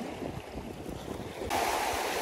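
Sea surf washing over rocks, with wind gusting on the microphone. About one and a half seconds in, the sound switches abruptly to a louder, brighter rush of breaking surf.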